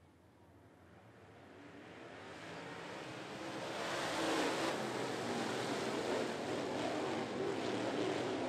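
A pack of dirt late model race cars' V8 engines, faint at first and growing steadily louder over about four seconds as the field comes closer, then running past at full throttle as a dense mix of engine notes.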